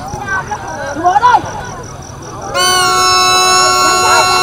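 Short shouts from players or spectators, then, a little over halfway through, a long, steady horn blast starts and holds to the end.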